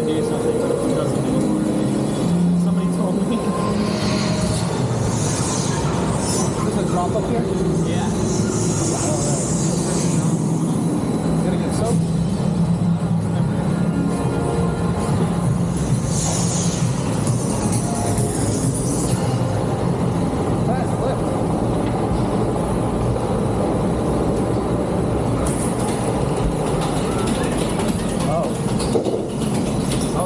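Dark-ride show soundtrack playing loudly: music with a voice track, over the water-coaster boat running through its channel. Bursts of hissing come about 4, 9 and 17 seconds in.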